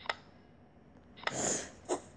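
Memory-game card sound effects: a short click as a card flips just after the start, a brief airy swish about a second later, and another short sound near the end as the matched pair of cards comes up.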